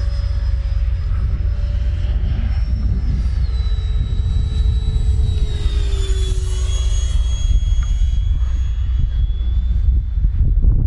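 Whine of the Freewing JAS-39 Gripen's 80 mm electric ducted fan as the RC jet flies by, its pitch dropping about three to four seconds in and again around six seconds.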